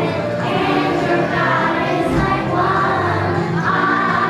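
A children's choir singing a song together.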